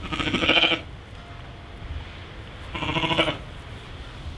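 Sheep bleating twice, two wavering calls about two and a half seconds apart, the first a little longer than the second.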